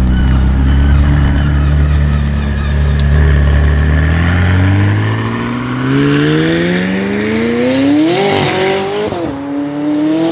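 McLaren 600LT's twin-turbo V8, tuned and fitted with an Fi Exhaust, accelerating hard away. The engine note climbs steadily for several seconds, then drops sharply at an upshift about nine seconds in and starts rising again.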